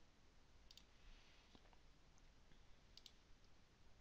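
Near silence, with about three faint, brief computer mouse clicks.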